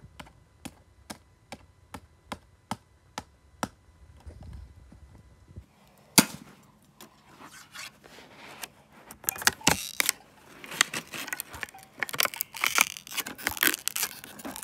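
A row of evenly spaced sharp clicks, about two a second, for the first few seconds. Then a single sharp crack, and later a dense run of crackling and scraping as a pointed blade is worked against a plastic DVD.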